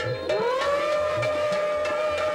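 A conch shell blown in one long steady note that slides up in pitch just after it begins, over background music with soft tabla beats.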